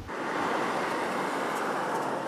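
Steady street traffic noise, with a car driving past.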